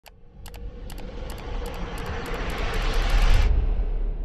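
Intro sound effect: a rising whoosh that swells for about three and a half seconds over a deep rumble, broken by sharp glitchy clicks, then the hiss cuts off suddenly and the rumble lingers.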